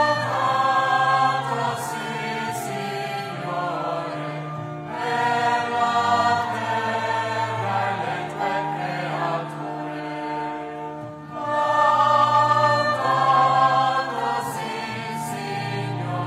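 Choir singing a slow liturgical chant in long held phrases, with short breaks about five and eleven seconds in.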